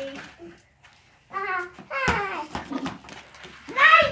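Children talking and calling out, with a short pause about a second in and a brief sharp knock about two seconds in.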